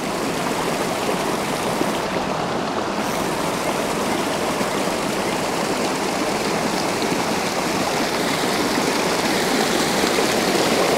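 Creek water rushing steadily over rocks at a rapid and a small waterfall, a continuous even roar of flowing water.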